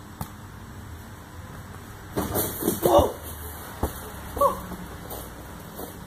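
A basketball trick-shot dunk: a few sharp knocks of the ball against the hoop and ground, loudest about three seconds in, with short shouts around then and again a second or so later.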